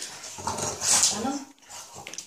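French bulldog making short breathy vocal sounds with a hiss about halfway through, fading out after about a second and a half.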